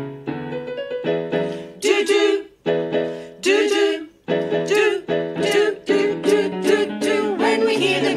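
A small women's vocal group singing in harmony over a light instrumental backing, in short phrases broken by brief pauses about two and a half and four seconds in.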